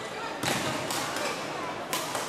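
Badminton rackets striking the shuttlecock during a rally: two sharp hits about a second and a half apart, over a steady din of voices and play in a large sports hall.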